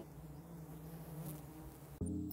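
Faint, steady low buzzing hum.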